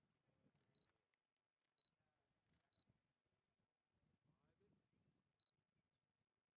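Near silence, with four brief, faint high beeps: three a second apart, then one more near the end.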